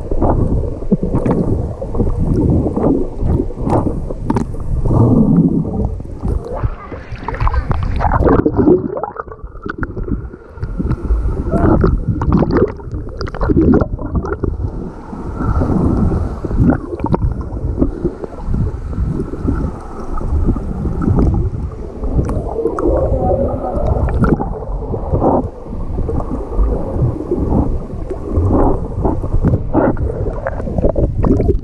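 Muffled underwater sound from a GoPro in its waterproof housing as a swimmer moves and breathes out: dull churning water and bubbles, with frequent knocks, and almost nothing in the higher range.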